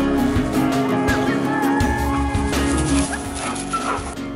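Background music, with a dog's short high-pitched whines over it from about a second in.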